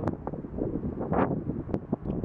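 Wind buffeting the microphone in uneven gusts, strongest a little after a second in.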